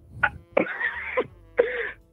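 A caller coughing and clearing her throat over a phone line: one short burst, then two longer ones, with a thin, band-limited telephone sound.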